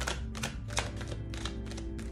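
A deck of tarot cards being shuffled hand over hand: a quick, irregular run of crisp card snaps and flicks, over soft background music.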